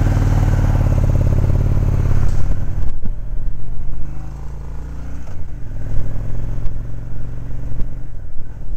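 Motorcycle engine pulling away under acceleration. It runs loud and steady for about three seconds, drops back, and after a short break past the fifth second rises in pitch again as it picks up speed.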